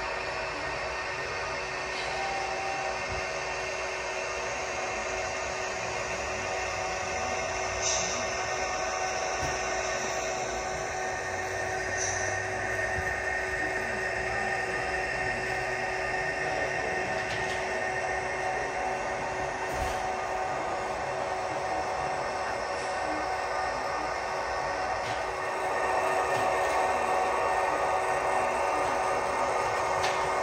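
Model railroad coal train running on the layout: a steady mechanical running sound with many steady tones and a few faint clicks, growing a little louder near the end.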